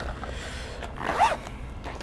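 Zipper being pulled along a clear plastic zippered pouch: one continuous scraping run, louder about a second in.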